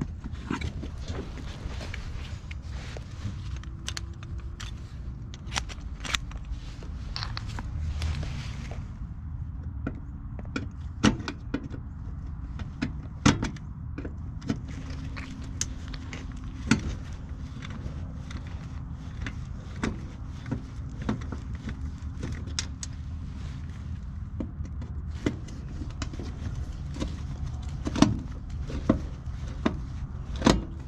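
Scattered sharp clicks and taps as a clamp meter and its test leads are handled against a gas pack's sheet-metal cabinet, a few louder knocks among them, over a steady low rumble.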